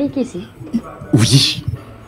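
A man's voice making short wordless vocal sounds into a handheld microphone: a brief pitched, gliding cry at the start, then a loud breathy outburst about a second in.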